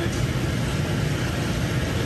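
Powder-coating spray booth in use: a steady low rushing drone of moving air from the booth's extraction and the powder gun spraying, with no change in level.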